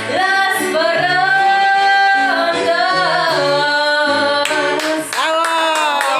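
A woman singing a Spanish-language song through a handheld microphone, holding long notes over accompaniment with a low bass line. The singing breaks off briefly about five seconds in.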